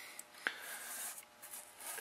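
A fingertip rubbing faintly at the sludge of clutch fibers and metal bits on the magnet in an automatic transmission oil pan, with one small click about half a second in.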